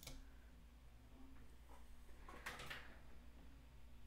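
Near silence: faint room tone with a low hum, and one soft, brief noise about two and a half seconds in.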